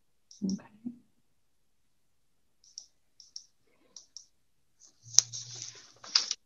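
Light, sparse clicks at a computer, mostly in close pairs a second or so apart, as text is entered on a slide; a sharper click and a brief low hum come near the end.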